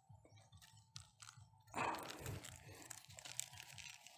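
Dry coconut-frond mulch crackling and rustling. A few faint clicks come first, then a louder crunch just under two seconds in, followed by softer crackling.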